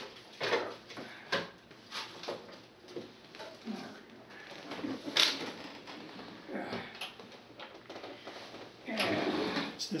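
Knocks, clatter and scraping as a National SW-54 shortwave receiver with a metal cabinet is pulled out from behind a desk and handled. There is a louder bump a little after five seconds and a busier stretch of handling noise near the end.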